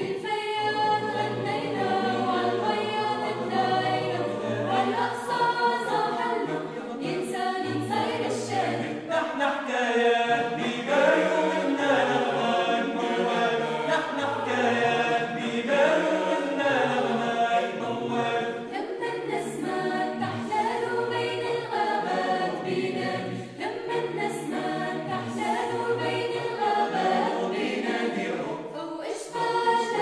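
Mixed-voice choir of men and women singing a cappella in several parts, continuous throughout with no instruments.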